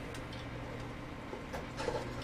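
Quiet room tone with a steady low hum and no distinct handling noise.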